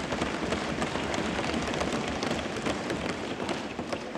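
Assembly members applauding: a dense, steady crackle of clapping and desk-thumping.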